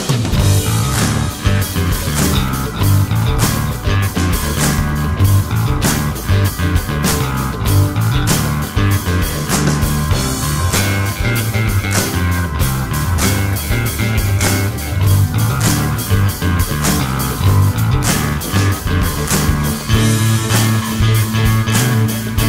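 Instrumental break of a rock song: electric guitar and bass guitar over drums keeping a steady beat, with no singing.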